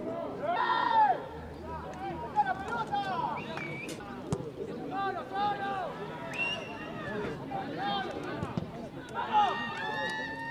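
Several voices shouting and calling out across an outdoor football pitch during open play, short overlapping shouts with no clear words.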